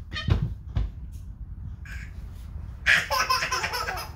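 Toddlers playing: two low bumps in the first second, then, about three seconds in, a young child's loud, high-pitched squealing laugh.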